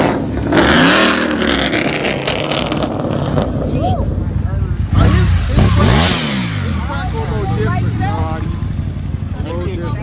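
A Ford Mustang's engine revving hard twice while the car slides in a donut, each rev climbing and dropping back, the first about half a second in and the second about five seconds in, with a rush of noise at the peak of each.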